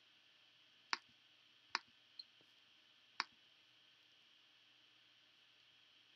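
A small electronic buzzer on a Raspberry Pi GPIO pin giving a few faint, sharp clicks about a second apart instead of beeping. The buzzer is not buzzing as it should, which the owner puts down to a bad buzzer.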